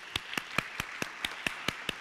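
Hand clapping close to a podium microphone: sharp, even claps, about four or five a second, over a softer wash of applause.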